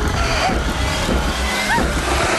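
Horror-trailer sound design: a loud, dense rumbling roar, with a few faint short squealing tones that rise and fall over it.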